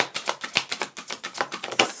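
A tarot deck being shuffled by hand: cards slapping together in quick succession, about ten a second, with a sharper snap near the end.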